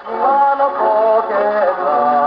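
A 1934 Victor 78 rpm record of a Japanese film song played on an acoustic gramophone: a male voice singing over a small orchestra, heard through the machine's horn, thin and with almost no bass.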